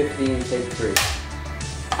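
Background music, with one sharp clap about a second in from a film clapperboard being snapped shut to mark the start of a take.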